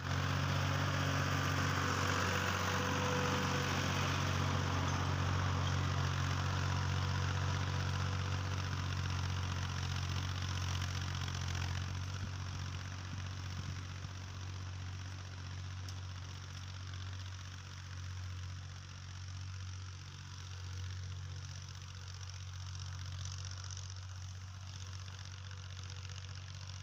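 Fiat 480 tractor's three-cylinder diesel engine running steadily as the tractor pulls a rotary tiller across a field, growing fainter from about halfway through as it moves away.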